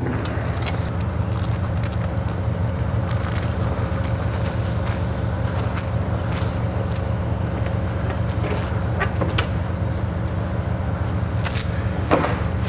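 A diesel truck engine idling steadily, with scattered light clicks and scrapes as a trailer's rear tarp curtain is rolled up with a rod.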